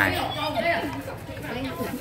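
People chatting: several voices talking over one another.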